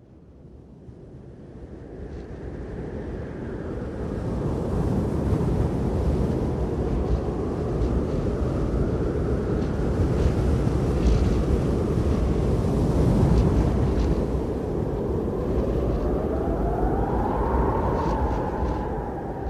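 A low, wind-like rumble that fades in over the first few seconds and then holds steady, with a faint rising whine near the end.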